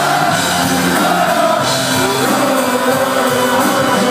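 Live synth-rock band playing loud, with held synthesizer notes and a voice singing over the band. Heard from inside the crowd.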